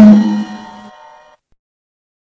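Last stroke of a drum-and-percussion sound effect ringing out with a low pitched tone and fading away about a second in.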